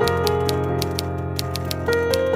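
Typewriter keys striking in a quick, even run of clicks, about three to four a second, over sustained background music.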